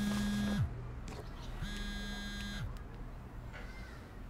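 Mobile phone vibrating against a wooden tabletop on an incoming call: two buzzes of about a second each, the first ending about half a second in and the second starting about a second later, each sagging in pitch as the motor stops.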